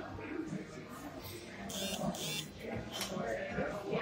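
A drink sucked up through a plastic straw, two short slurps about two seconds in, over the murmur of a restaurant dining room.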